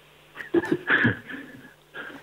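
A man's voice over a telephone line, muffled and quieter than the studio speech, making brief vocal sounds with no clear words, from about half a second in.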